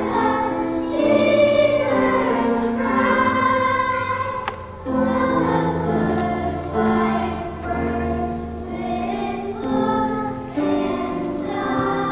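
Children's choir singing in sustained chords, the notes changing every second or so, with a brief break for breath about five seconds in.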